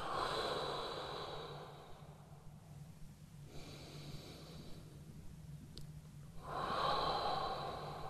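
A man's slow, deep breaths: a long breath fading over the first two seconds, a quieter one in the middle, and a louder one near the end.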